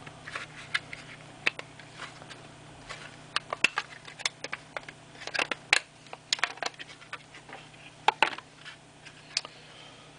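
Red plastic Raspberry Pi clamshell case being handled and pulled apart into its two halves: irregular sharp plastic clicks and scrapes, with bunches of clicks a few seconds apart.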